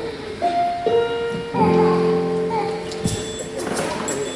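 Keyboard playing soft held notes under the stage: a single note, then a lower one, then about a second and a half in a full sustained chord.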